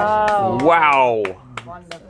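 A person's voice in a long drawn-out exclamation whose pitch swoops up and back down, followed by a few light clicks near the end.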